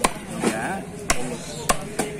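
A knife chopping through a red snapper on a wooden chopping block, cutting off the head: a few sharp chops, spaced about half a second to a second apart.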